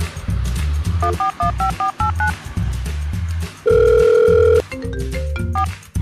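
Phone keypad tones as a number is dialled: a quick run of about eight beeps, then one loud steady tone lasting about a second, then a few short beeps. A steady bass beat from background music runs underneath.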